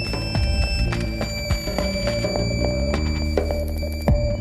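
Live ensemble music from violin, electric guitar, electric bass, drums and live electronics, playing baroque music rearranged in a modern style: held, ringing high tones over a dense run of sharp percussive hits.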